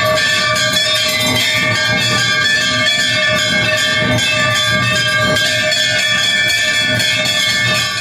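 Temple bells rung rapidly and without pause during a puja, a dense ringing with many tones held steady over fast repeated strikes.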